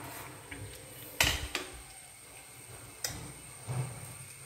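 A few light clicks and knocks from a pan of freshly popped popcorn, about a second in and again near three seconds, over faint background noise.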